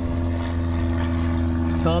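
An engine running steadily at one constant pitch, an even drone that does not rise or fall.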